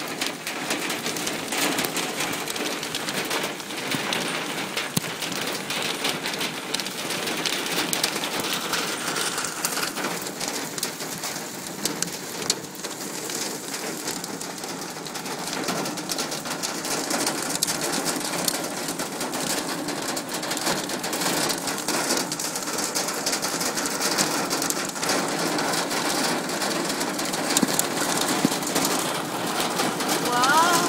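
Hailstorm: hail and rain pelting down steadily, a dense patter of countless small impacts.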